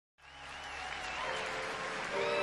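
Concert audience applauding, fading in from silence just after the start.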